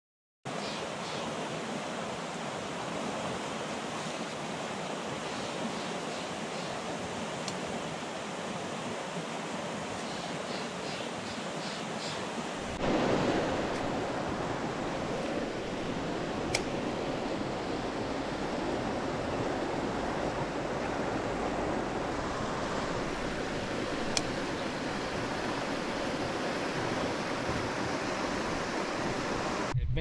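Creek water rushing steadily over a shallow bed, an even hiss that grows louder about thirteen seconds in.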